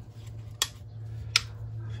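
Two sharp clicks, under a second apart, from small switches being pressed on miniature speaker boxes to turn on their LEDs, over a steady low hum.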